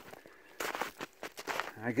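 Footsteps crunching through deep snow, a run of crunches starting about half a second in.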